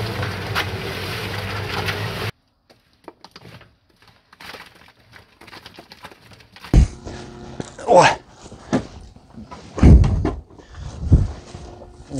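Small electric concrete mixer running with a steady hum for about two seconds, then cutting off suddenly. In the second half, several heavy thumps and scrapes from working the mixed concrete into a wheelbarrow.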